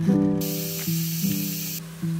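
Soft background music with sustained notes. A steady hiss like a spray starts about half a second in and cuts off sharply after about a second and a half.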